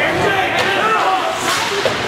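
Ice hockey rink during play: spectators' voices calling out over the game, cut by a few sharp cracks of sticks and puck.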